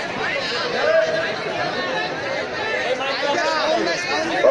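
Speech: men's voices talking, several at once.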